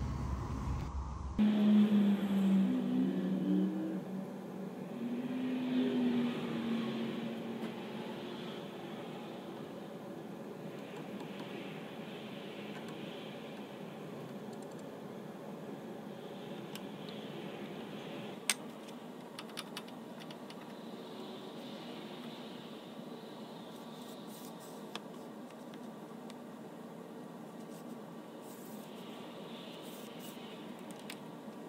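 A low wavering hum in the first several seconds, then faint steady room noise with a few light clicks and taps from hands adjusting a router table fence and straightedge; the router is not running.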